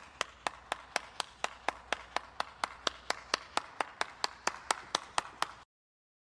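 One person clapping alone, steady evenly spaced claps about four a second, that stop suddenly near the end.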